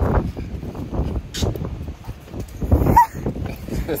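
Wind buffeting the phone's microphone in gusts, with a short indistinct vocal sound about three seconds in.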